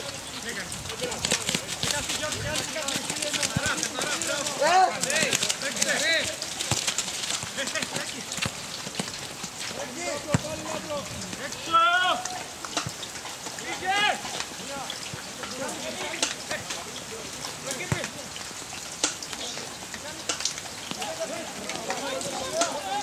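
Footballers' short shouted calls across the pitch during play, a few of them about five, six, twelve and fourteen seconds in, over a steady crackling hiss.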